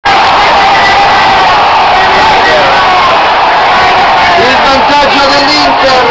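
A radio commentator shouting a goal announcement at full voice over stadium crowd noise, so loud the recording is overloaded. It starts with a long, high held shout, and rapid excited speech follows from about four seconds in.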